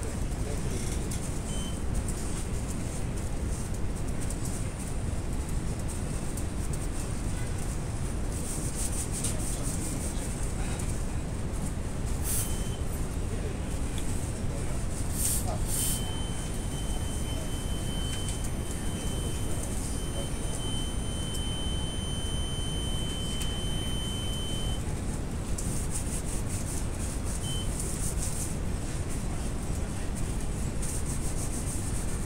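Graviner Mk6 oil mist detector's alarm buzzer: a steady high-pitched tone sounds for about nine seconds in the second half, the alarm set off as a detector head's sensor is tested. A few short beeps at the same pitch come before and after it, with a couple of sharp clicks of handling just before the long tone, over a steady low background rumble.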